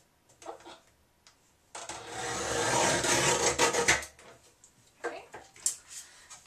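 Arm of a guillotine paper cutter slicing through a sheet of printed paper: a rasping cut lasting about two seconds, with light paper-handling taps and rustles before and after.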